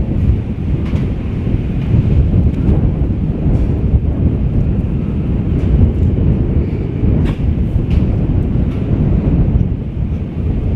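Wind buffeting the microphone: a loud, uneven low rumble, with a few faint clicks.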